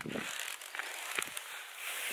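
Handling noise and the rustle of a nylon rain jacket brushing close against the camera, with a couple of soft knocks a little over a second in.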